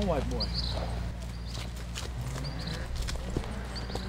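Outdoor ambience: a steady low hum with short high chirps about once a second and a few faint clicks, after a voice trailing off at the very start.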